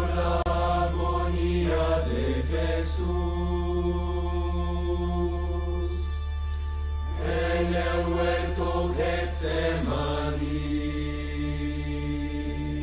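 Mixed choir of nuns and friars singing a slow sacred chant: short phrases of changing notes, each followed by a long held note, over a steady low hum.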